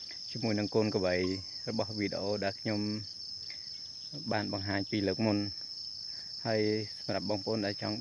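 A man talking in stretches, over a steady, high-pitched drone of insects.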